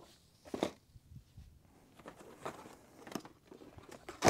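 Cardboard model-kit boxes being handled inside a large cardboard shipping carton: a few light knocks and scrapes, the strongest about half a second in.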